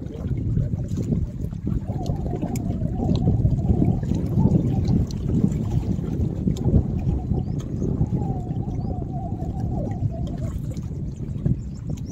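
Steady outdoor wind rumble on the microphone, mixed with lake water lapping against the shoreline rocks.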